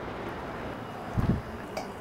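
Steady whoosh of grow-tent circulation fans, with a dull thump a little over a second in and a faint click shortly after.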